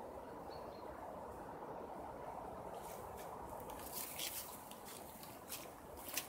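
Faint, steady outdoor background noise with a few soft clicks between about three and four and a half seconds in.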